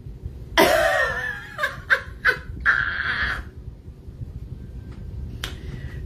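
A woman's voice making a few short wordless sounds in the first half, over a steady low room hum, with a single sharp click later on.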